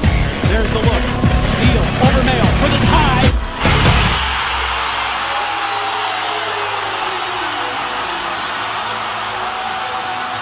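Trailer music with a heavy beat for about the first four seconds, then it drops out and a loud arena crowd cheers steadily after a game-tying buzzer-beater.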